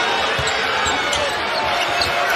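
A basketball bouncing on a hardwood arena court, a couple of low thumps under a second apart, over the steady noise of the arena crowd.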